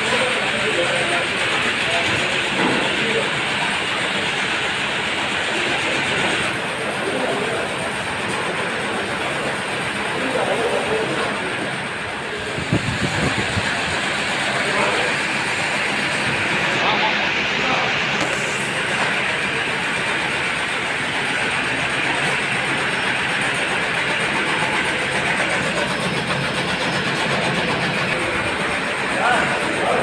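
Bottling-line machinery and bottle conveyors running, a steady, loud mechanical din without pauses.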